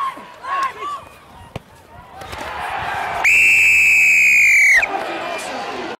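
A referee's whistle giving one long, loud, steady blast about three seconds in, lasting about a second and a half, blown to stop play.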